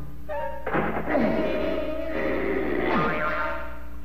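Cartoon background score: pitched notes with sliding, falling glides and a held note, possibly with a light thunk of a sound effect mixed in.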